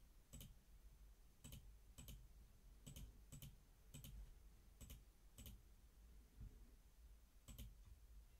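Faint computer mouse clicks, about nine spread irregularly, many heard as a quick press-and-release pair, as colour swatches are picked one after another in a palette.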